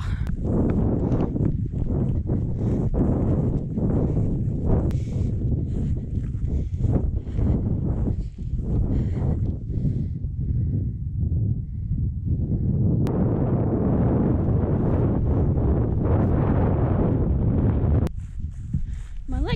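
Strong wind rumbling on the handheld camera's microphone. Through the first half, a runner's rhythmic footfalls on moorland grass come at about two to three a second; later the wind turns to a steadier rush.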